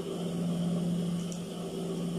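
Steady electric motor hum from a sewing machine running idle, with no stitching.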